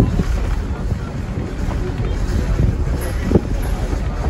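A 1928 tramcar rolling along the track: a steady low rumble from the wheels and running gear, with wind buffeting the microphone and a few knocks from the rails, the loudest about three seconds in.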